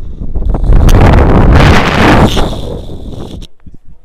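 Wind rushing over an action camera's microphone as a rope jumper swings at speed on the rope; it swells about half a second in, is loudest for a couple of seconds, then dies away near the end as the swing slows.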